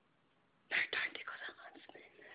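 A girl whispering, starting under a second in after a short hush.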